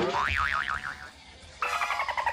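Cartoon-style comic sound effect: a sharp click, then a springy boing whose pitch wobbles rapidly up and down for about half a second. After a brief lull, a bright buzzy pitched sound starts near the end.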